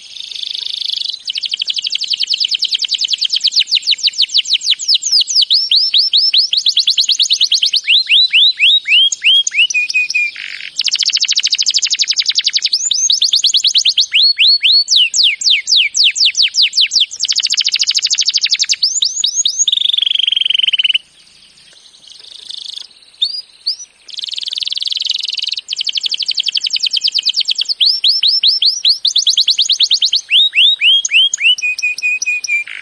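Domestic canary singing: a string of fast trills, each phrase a rapid run of repeated high, downward-sweeping notes or buzzy rolls lasting a second or a few, one after another, with a short break about two-thirds of the way through.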